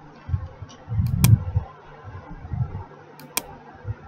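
Two sharp computer mouse clicks about two seconds apart, among dull low thuds and a faint steady hum.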